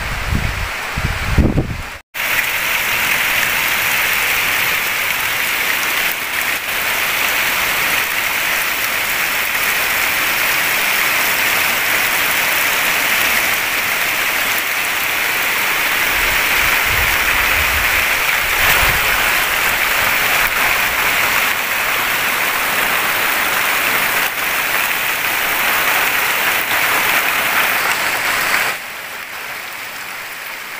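Heavy rain pouring down and splashing on waterlogged ground and puddles, a dense steady hiss. It cuts out for an instant about two seconds in, and drops to a softer rain sound just before the end.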